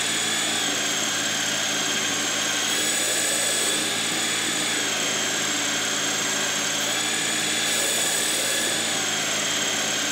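Metal lathe running with a steady high whine while a carbide tool cuts the threaded tenon of a rifle barrel.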